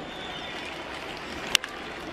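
Steady ballpark crowd noise, then about one and a half seconds in a single sharp crack of a wooden bat hitting a pitched baseball hard.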